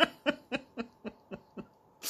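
A man laughing softly: a string of short breathy pulses, about four a second, that fade away over a second and a half.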